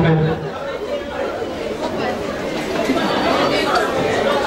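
Many people chattering at once in a large room, voices overlapping with no single speaker standing out; a man's voice finishes a word right at the start.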